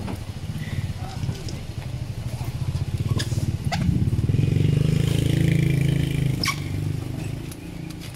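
A vehicle engine running, growing louder for about two and a half seconds from halfway through, with a few sharp knocks.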